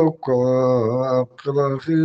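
A man's unaccompanied voice chanting in long held notes, each phrase about a second long, broken by short breaths.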